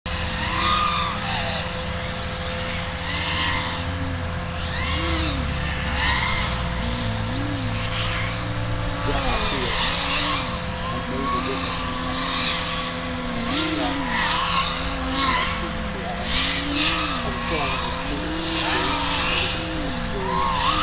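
FPV racing drone's electric motors and propellers whining, the pitch rising and falling about once a second as the throttle is worked through turns and gates, with a rushing noise from the props and a steady electrical hum underneath.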